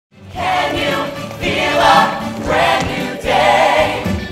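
Mixed-voice show choir singing loudly, in sung phrases of about a second each.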